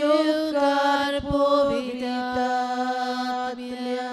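A single voice singing a slow chant in long held notes, sliding gently between a few pitches.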